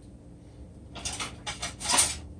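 Quiet room tone, then from about a second in a few short knocks and scrapes of handling, the loudest near the end, as a glass jar of coconut oil is picked up and handled.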